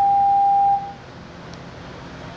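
An 800 Hz sine test tone played through a 1-inch speaker driven by a 9-volt keychain amplifier under output test. It is one steady pure tone that cuts off about three quarters of a second in.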